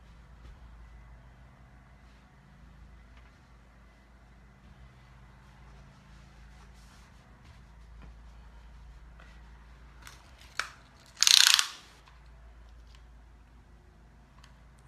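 Faint rustling and light touches of hands smoothing a wet crocheted sweater on a terry towel, then, about ten and a half seconds in, a click followed by a short, loud rasping burst as a tape measure is pulled out.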